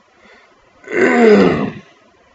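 A man clearing his throat once, about a second in, the pitch falling as it goes.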